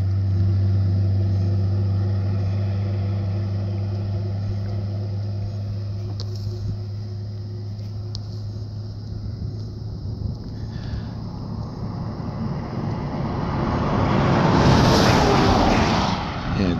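A vehicle engine idling with a steady low hum. Near the end a rushing noise swells to its loudest about a second before the end, as of a vehicle going by.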